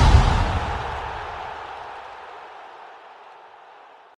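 Deep boom sound effect dying away slowly, its low rumble and hiss fading out over about four seconds.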